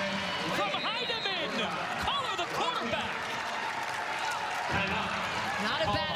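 Basketball game sound: sneakers squeaking on the hardwood court in many short squeals, a ball bouncing, and steady crowd noise in the arena.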